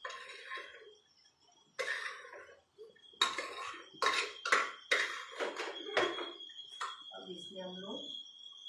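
A metal spoon scraping and knocking inside a pot while stirring in washed rice and lentils, in a quick series of strokes. A woman's voice comes in briefly near the end.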